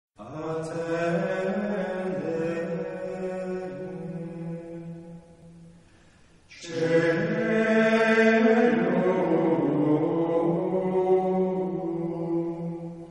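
Slow vocal chant in two long held phrases: the first fades out about five seconds in, and the second begins just after six seconds and carries on.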